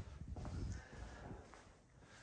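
Faint footsteps on a concrete floor, dying away toward the end.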